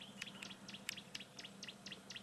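Faint bird chirping: a rapid run of short, high chirps, several a second.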